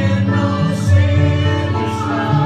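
Live church worship music: a small group of singers with violins and guitar, playing a hymn with long held notes.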